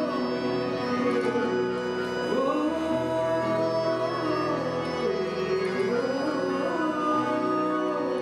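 Live acoustic band performance of a slow Hindi song: a male voice singing gliding, ornamented phrases over sustained keyboard and harmonium chords with acoustic guitar.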